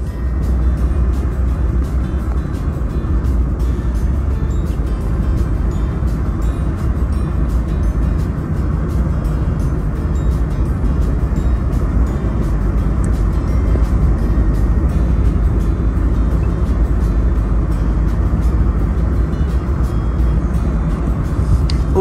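Steady road and engine rumble heard from inside a moving car, with music playing along with it.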